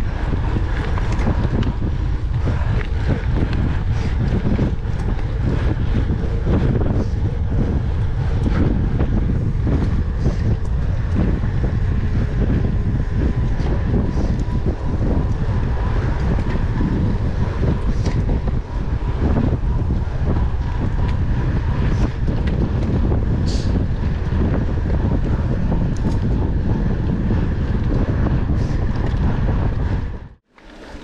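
Steady wind noise buffeting an action camera's microphone on a mountain bike ridden at speed, with the tyres rolling on a smooth forest road beneath it.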